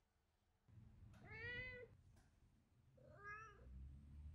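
Domestic cat meowing twice: a longer meow about a second in, then a shorter one about two seconds later.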